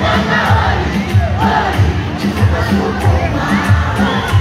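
Loud amplified music with a heavy bass beat, about two beats a second, under a crowd shouting and cheering.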